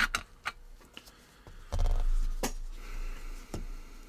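Gloved hands handling an open-backed mechanical watch on a work mat: a few light, sharp clicks and a brief rustle about two seconds in.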